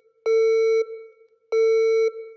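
Two electronic beeps on one steady mid-pitched tone, like a phone busy signal, each about half a second long with a short fading tail and a little over a second apart: a sound effect in a logo intro.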